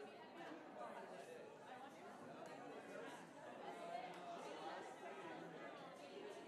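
Faint chatter of many people talking at once, overlapping voices with no single one clear: a congregation milling about after the service.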